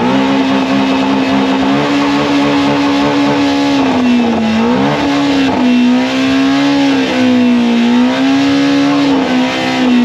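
Shelby GT350 Mustang's flat-plane-crank V8 held at high revs for a burnout, its note steady with small wavers and a brief dip about four seconds in.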